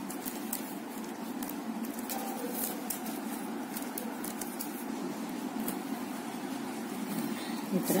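Plastic basket-weaving wire strands ticking and rubbing faintly as they are threaded and pulled through a weave, over a steady low background hum.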